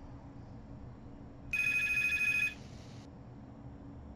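A single short electronic ringing tone, a rapid warble lasting about a second, over a low steady background hum.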